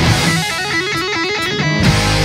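Rock song in an instrumental break: the bass and drums drop out for about a second while a guitar plays a run of notes on its own, then the full band comes back in near the end.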